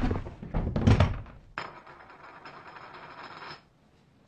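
Heavy wooden thuds and clatter as a saloon table is stomped and tips over, loudest right at the start and again about a second in. Then a faint steady hiss with a thin high tone, which cuts off shortly before the end.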